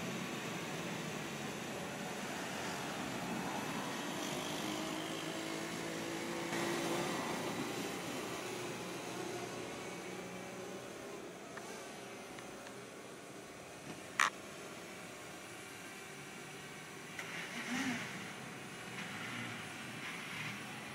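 City street traffic: a steady wash of passing cars and engines. A single short sharp sound stands out about 14 seconds in.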